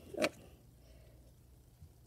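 A short spoken "oh", then quiet room tone with a faint small click near the end.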